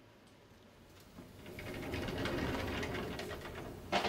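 A rapid rattling, clicking mechanical noise that swells up about a second in, holds for about two seconds and fades, followed by a single sharp click near the end.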